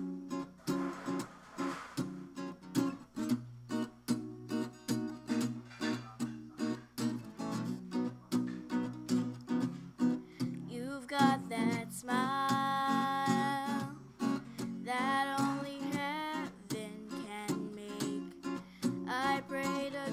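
Acoustic guitar playing the song's intro as steady, evenly spaced chords. From about eleven seconds in, a voice sings long wordless notes over it, with slides in pitch.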